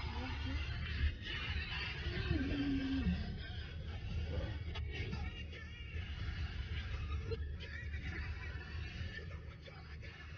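Car cabin noise while driving on an unpaved road: a steady low rumble, with music and a voice faintly behind it.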